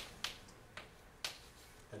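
Chalk striking and scraping on a blackboard as large letters are written, giving four sharp clicks over the first second and a half.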